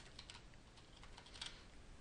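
Faint computer keyboard typing: scattered quick keystrokes as a word is typed.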